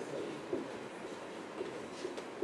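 Felt-tip marker writing on a whiteboard, faint and scratchy, over steady room noise.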